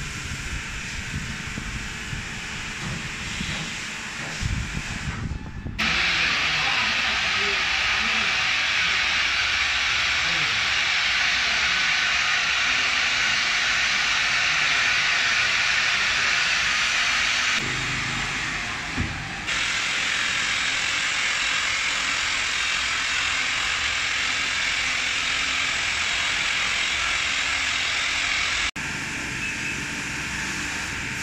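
Electric rotary polisher with a foam pad running against a car's painted front panel: a loud, steady hiss that starts suddenly about six seconds in and stops shortly before the end.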